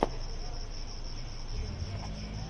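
Insects trilling steadily in a high, pulsing chorus, with one sharp click right at the start.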